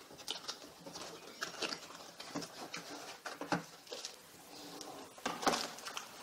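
A cardboard product box being opened and unpacked by hand, with light scrapes, taps and rustles of card and plastic, and a louder knock about five and a half seconds in.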